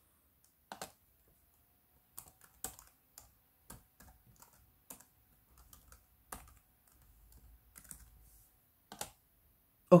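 Laptop keyboard keys pressed one at a time in short irregular runs of light clicks, as short device IDs are typed.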